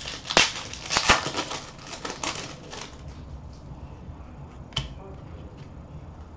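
Hockey trading cards handled at a glass counter: a run of rustling, crinkling and sharp clicks over the first three seconds, then one more click near five seconds.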